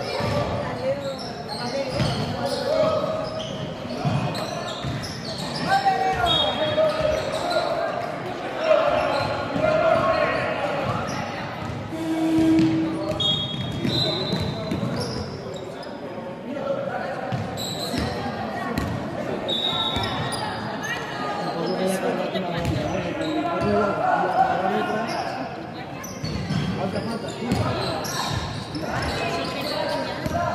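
Basketball game in a large sports hall: a basketball bouncing on the hardwood court, a few brief high sneaker squeaks, and players and spectators calling out.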